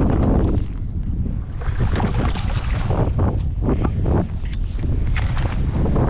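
Wind buffeting the microphone in a steady low rumble, with choppy lake water slapping irregularly against the side of the boat.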